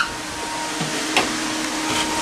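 Newly wired electric radiator cooling fan on a 1957 Chevy 210, running steadily with a loud, even rush of air and a faint steady tone; it really moves some air. A brief click about a second in.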